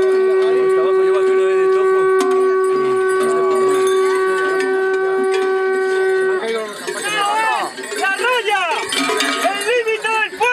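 A horn blown in one long, steady note that stops about six seconds in. After it come the clanking of the large cencerros worn by the zarramacos and a run of rising-and-falling tones.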